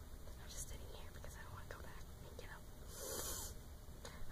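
Soft whispering by a young woman, with a breathy hiss a little after three seconds in.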